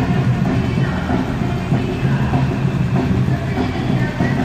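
Protest march: a drum group playing a steady, rapid beat over the noise of a marching crowd, with scattered higher tones above it.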